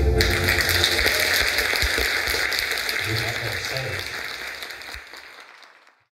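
Audience applauding as the final chord of the accordion-and-guitar trio stops, the applause slowly growing quieter and fading out near the end.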